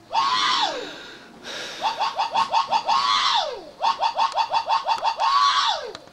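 A high-pitched voice: three long wails that rise and then fall away, with quick choppy runs of short yelps, about eight a second, between them.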